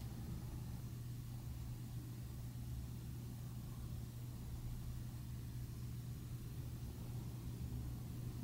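Room tone: a steady low hum with a faint hiss, unchanging throughout.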